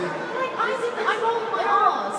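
Many voices talking over one another in a large hall: indistinct audience chatter.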